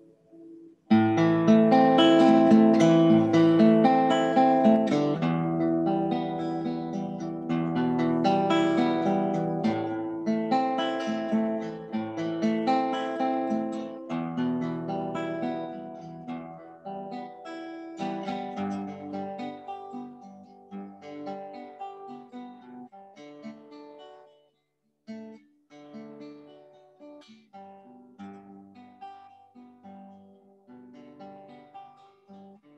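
1946 Epiphone Emperor acoustic archtop guitar being played: full strummed chords start about a second in, loud at first, then the playing grows gradually softer. It stops briefly about three-quarters of the way through before quieter chords resume.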